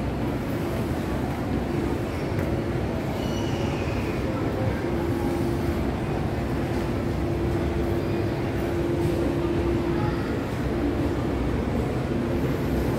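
Steady low rumble of the ambient noise inside a large shopping mall, with a steady hum for several seconds in the middle.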